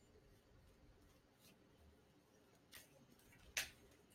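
Near silence with a few faint, brief rustles of a deck of oracle cards being handled and shuffled, the last, near the end, a little louder.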